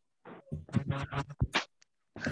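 A voice coming through a video call in choppy, garbled fragments, cutting in and out in short bursts: the sign of a poor connection.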